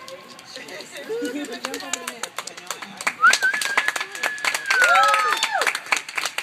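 A few spectators cheering and clapping for the end of a wheelchair tennis match: scattered claps and voices, then from about three seconds in a long, drawn-out high cry joined by a lower voice.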